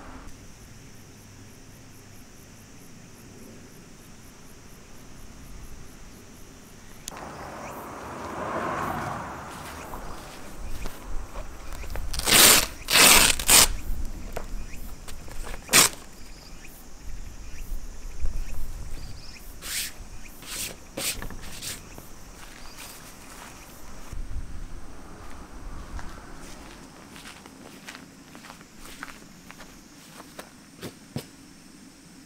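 Canvas tent's stove-pipe port flap being pulled open, with a few loud sharp ripping sounds about twelve seconds in and another shortly after, amid fabric rustling and footsteps on grass. Insects trill faintly and steadily in the background.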